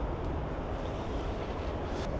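Steady outdoor background noise with a low rumble, no distinct events.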